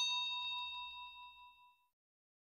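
A notification-bell sound effect: one bright ding that rings with several clear tones and fades away by about a second and a half in.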